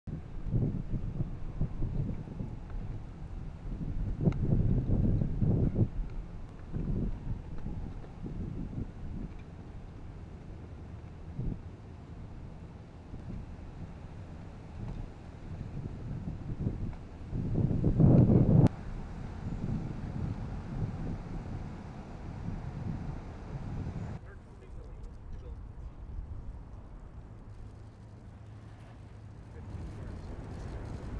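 Wind buffeting the microphone in gusts over a low rumble of motorcade vehicles, loudest around four to six seconds in and again near eighteen seconds. About six seconds before the end the sound drops suddenly to a quieter background.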